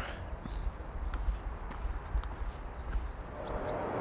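A hiker's footsteps on a forest floor of grass, twigs and dry branches, walking away, over a steady low rumble.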